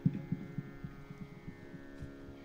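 A harmonium drone held steady under a series of irregular, soft low thumps, the strongest right at the start, from the tabla drums being handled and tapped between pieces.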